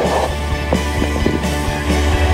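Background music with a steady beat over a sustained bass line.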